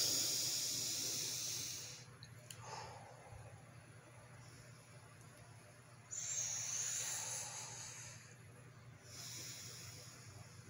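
A man taking slow, deep breaths, heard mainly as two long exhales through pursed lips: one at the start and one about six seconds in, with quieter breaths between.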